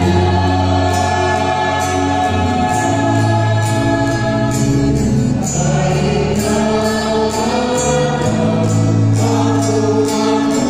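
A group of mourners singing a slow hymn together, with long-held notes.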